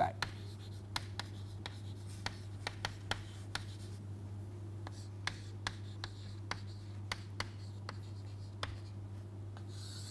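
Chalk writing on a chalkboard: a run of irregular sharp taps and short scratches as the letters are formed, over a steady low hum.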